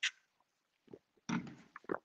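A man drinking from a water bottle: a short sharp sip sound at the start, then a few short gulping and breathing sounds in the second half.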